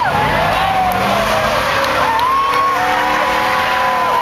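A car doing a burnout: its tyres squeal steadily in several drawn-out, slowly wavering tones over the engine.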